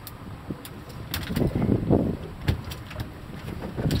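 Steady low rumble of wind and the boat, with several sharp knocks and clicks and a louder scuffling stretch about a second and a half in, as the line is worked free from the cobia on the fibreglass deck.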